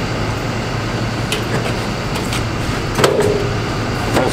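A few light metallic clicks from a steel slide-top roll cart being handled, with a sharper knock about three seconds in, over a steady background hum.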